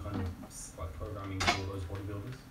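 A sharp metallic clink about one and a half seconds in, amid brief faint voice sounds.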